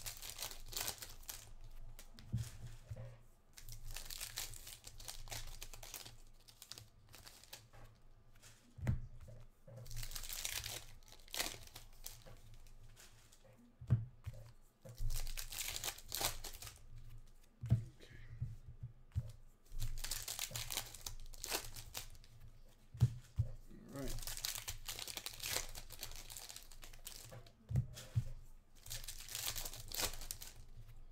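Foil wrappers of 2021 Panini Contenders football card packs being torn open and crinkled by hand, in repeated crackly bursts every few seconds, with a few soft knocks between them.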